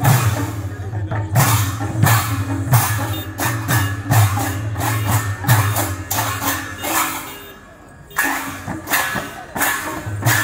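Kirtan percussion: double-headed barrel drums and large brass hand cymbals playing a fast, driving rhythm, the cymbal clashes sharp over the deep drum strokes. About three-quarters of the way through, the playing drops away for under a second, then starts again.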